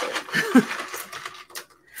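Light clinks and taps of glassware and metal bar tools being handled while a cocktail is made, with a short laugh about half a second in.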